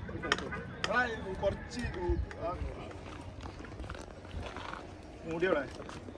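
Indistinct voices of several men talking off and on, with a few short clicks or light knocks in between.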